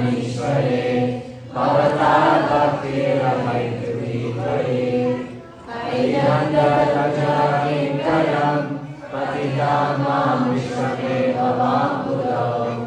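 A group of voices chanting a devotional mantra together in unison, in phrases of about four seconds broken by short pauses for breath.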